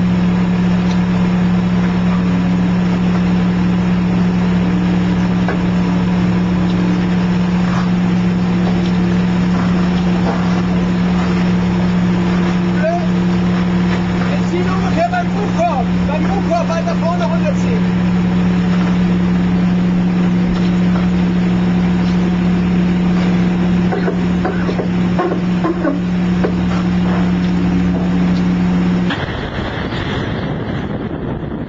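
A steady low drone of constant pitch over a wash of wind and water noise, with faint wavering calls about halfway through. The drone stops abruptly about a second before the end.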